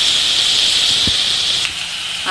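Chopped onions, green chillies and coriander leaves sizzling as they fry in a wok: a steady hiss, with a single soft thump about a second in and the hiss easing slightly near the end.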